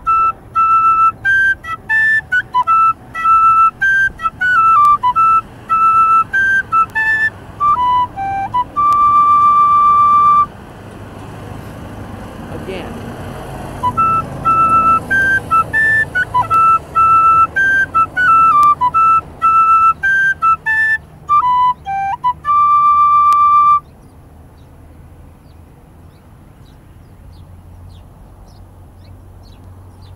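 Tin whistle playing two phrases of a Scottish strathspey tune, played through twice with a pause of a few seconds between. Each pass ends on a long held note. The playing stops a few seconds before the end.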